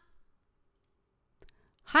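A pause of near silence broken by a single short click about one and a half seconds in, then a voice starting to answer "はい" (yes) right at the end.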